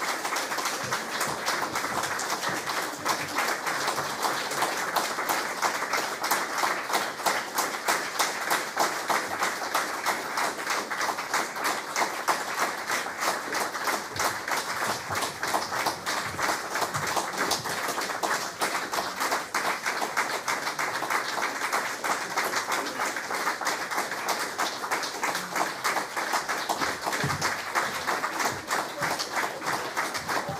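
A concert audience clapping steadily without a break: curtain-call applause at the end of the programme.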